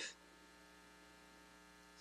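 Near silence in a pause between speech, with only a faint, steady electrical hum.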